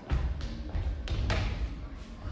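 Footsteps and several thuds on a stage floor as an actor hurries across it, over a low rumble.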